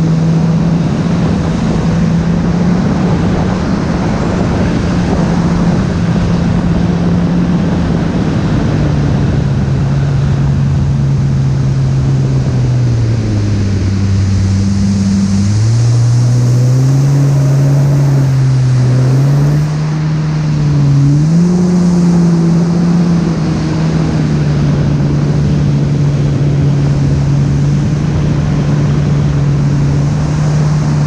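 Yamaha WaveRunner personal watercraft engine running at a steady cruise over the rush of water and wind. About halfway through the engine note drops as the throttle eases off, then climbs back in steps to its cruising pitch.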